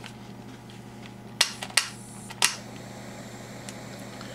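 Three sharp clicks from the igniter of a small pen-style butane torch as it is lit, the second following quickly on the first, over a steady low hum.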